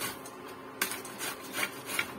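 Peeled bottle gourd being grated on a plastic-framed grater with a metal blade: a few scraping strokes, about one a second.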